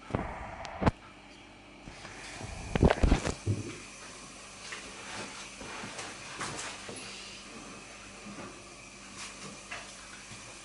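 A baking tin being handled and put into an oven: a knock about a second in, a cluster of dull thuds around three seconds in as the tin goes in and the oven door is shut, then a faint steady background with a few light clicks.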